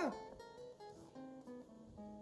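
Background music: acoustic guitar, plucked and strummed, with notes held steadily.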